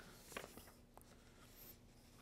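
Faint rustling of handheld paper sheets, a few soft short rustles with the sharpest about a third of a second in, over a low steady room hum.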